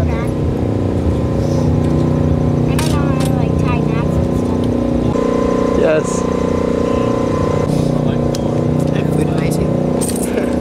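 A steady motor hum with several pitched tones, shifting slightly about five seconds in and again near eight seconds, with brief snatches of voices in the background.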